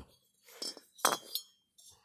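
Light metallic clinks from cast-aluminium two-stroke cylinders being handled and set down: two or three sharp clinks about a second in, with a brief high ring.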